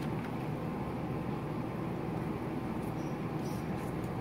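Steady low room hum, with a few faint rustles and crinkles of a paper pamphlet being opened and folded by hand.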